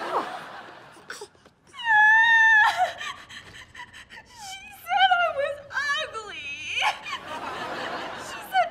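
A girl crying loudly: a long held wail about two seconds in, short broken sobs, then a long wail that falls in pitch. Studio-audience laughter fades out at the start.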